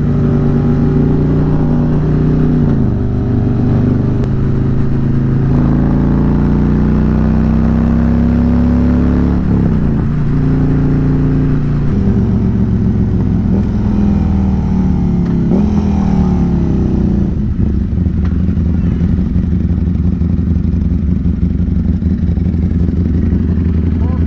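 Harley-Davidson Electra Glide's Milwaukee-Eight V-twin under way, its pitch climbing in steps through the gears with drops at each shift. It settles to a steady low idle for the last several seconds.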